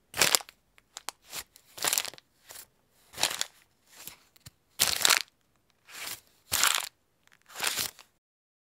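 Paper rustling and crunching in short bursts, about one a second.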